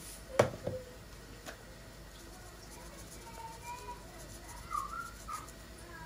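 Two sharp knocks about half a second in, followed by a lighter click. The rest is quiet kitchen room tone with a few faint, short high-pitched squeaky sounds.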